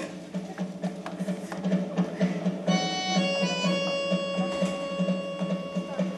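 Music cue with a pulsing low beat and light clicking percussion, joined about three seconds in by sustained held chords.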